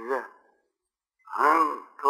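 A man's voice in a slow, measured discourse: a short phrase that ends just after the start, a pause of about a second, then speech again.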